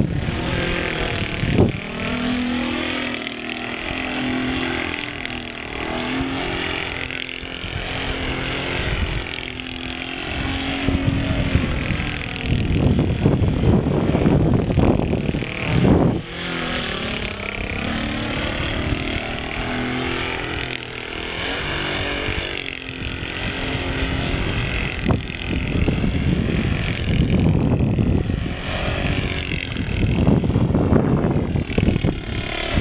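Saito 125 four-stroke glow engine in a flying RC aerobatic plane, running at varying throttle, its pitch sweeping up and down as the plane passes. Gusts of wind rumble on the microphone, loudest about two seconds in and around the middle.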